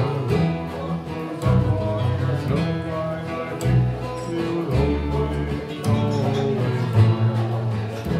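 Acoustic country band playing an instrumental passage between sung lines: upright bass, banjo, acoustic guitar and squareneck dobro, with the bass notes changing about once a second.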